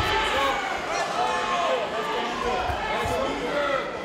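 Several voices shouting from ringside during a kickboxing bout, with a few sharp thuds of gloves and kicks landing, one right at the start.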